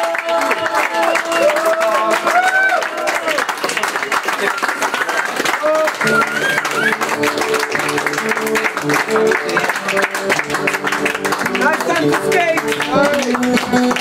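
Live acoustic band music: several acoustic guitars strummed together, with singing. The voices drop out a few seconds in while the guitars carry on, shifting to fuller, lower chords at about six seconds. The singing comes back in near the end.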